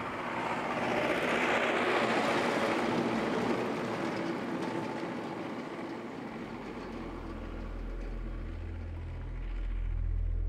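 A truck driving past on an asphalt road, its engine and tyre noise swelling to a peak about two seconds in and then fading as it moves away. A low steady hum comes in over the last few seconds.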